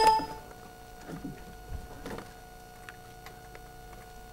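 A ringing bell-like chime dies away in the first half-second, then a quiet hall's room tone with a faint steady hum and a few soft rustles.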